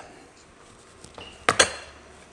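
Small blender set down on a wooden chopping board: two quick knocks about a second and a half in, with a short ring after them.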